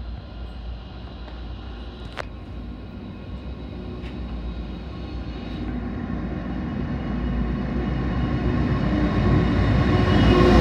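NR class diesel-electric locomotive NR42 leading a triple-headed freight train toward and past the platform. Its diesel engine drones, growing steadily louder as it draws near.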